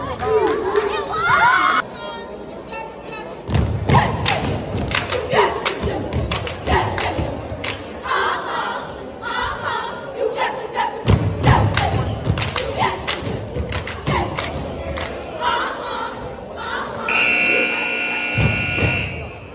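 Cheerleaders chanting together while stomping and clapping: a rapid run of sharp claps and heavy floor thumps under the voices. Near the end a steady high-pitched tone sounds for about two seconds.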